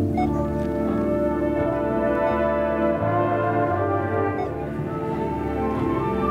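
High school marching band playing, its brass holding sustained chords over a low line that steps from note to note, with a few light percussion strikes.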